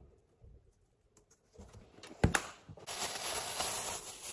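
Quiet kitchen handling sounds as ranch seasoning is shaken from a shaker into a glass of cream cheese: a few faint ticks and one sharp tap a little past two seconds in, then a steady rustling hiss for the last second or so.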